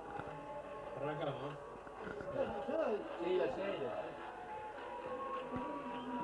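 Indistinct voices mixed with music, with no clear words.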